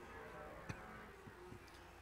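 Near silence in a gap in the commentary: faint steady hiss and hum, with one small click about two thirds of a second in.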